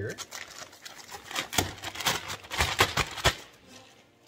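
Clear plastic bag crinkling as it is pulled open by hand to free a small part: an irregular run of sharp crackles that stops a little after three seconds in.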